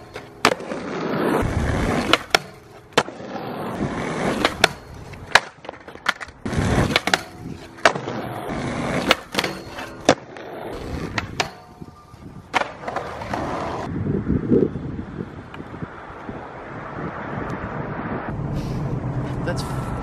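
Skateboard on concrete at a skatepark: wheels rolling, with many sharp pops, clacks and landings as tricks are tried on a flat bar. The sharp knocks stop about fourteen seconds in, leaving a steadier rolling noise.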